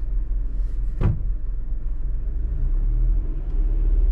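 Suzuki S-Presso's small three-cylinder petrol engine and road rumble heard inside the cabin, a steady low drone as a learner driver lets the clutch out and the car rolls off. A single brief knock about a second in.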